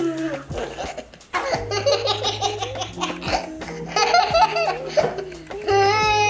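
A toddler laughing and giggling in several bursts, with a long high squeal near the end, over background music with steady held bass notes.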